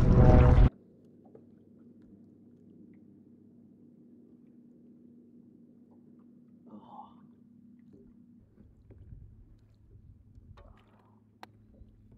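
Near silence after speech cuts off: a faint steady low hum, a few soft brief sounds, and one sharp click near the end.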